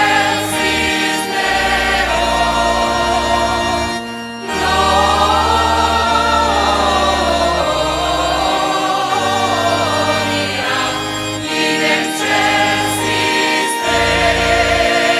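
Choir and assembly singing a sung part of the Mass in chorus, over long held bass notes that change every second or two. There is a short break between phrases about four seconds in.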